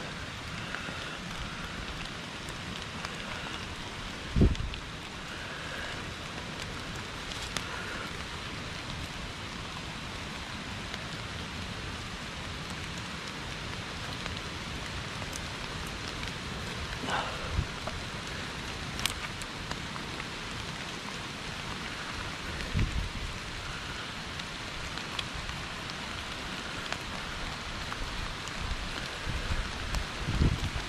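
Steady rain falling on the wet leaves and undergrowth of a woodland floor, with a couple of low thumps, the loudest about four seconds in.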